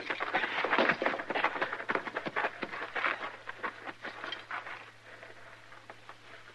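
Radio-drama sound effects of men diving for cover on rough ground under fire: a rapid, irregular clatter of crunches and knocks that fades away over the last couple of seconds.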